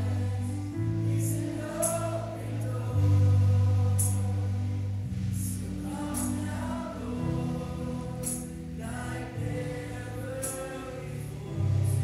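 Live church worship band: singing over sustained low chords, with a drum kit played throughout and cymbal crashes now and then.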